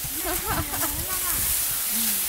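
People talking briefly over a steady hiss.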